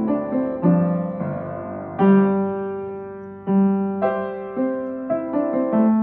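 Solo piano playing: notes and chords struck and left to ring and fade, with a loud chord about two seconds in that is held until it dies away, then notes coming more quickly toward the end.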